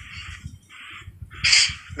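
Breathy, voiceless laughter: hissing exhaled breaths for the first second, then a louder rasping burst of laughter about one and a half seconds in.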